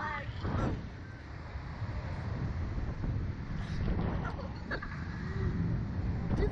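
Wind rumbling over the onboard camera's microphone as the Slingshot reverse-bungee ride's capsule is flung through the air, steady throughout, with a few faint short cries from the riders.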